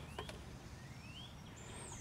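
Quiet outdoor background with a few faint, thin bird chirps rising in pitch and a light click near the start. No continuity beep sounds from the multimeter.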